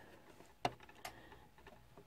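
Two small clicks, a sharp one a little over half a second in and a fainter one about a second in, from hands handling fabric at a stopped sewing machine; otherwise quiet.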